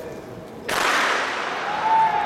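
Starting gun fired once about two-thirds of a second in, a sharp crack whose echo rings on and dies away over about a second. It signals the start of a 400 m race.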